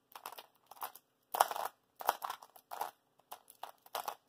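Cyclone Boys magnetic skewb being turned by hand: short plastic clacks of its pieces turning, in quick irregular bursts about every half second.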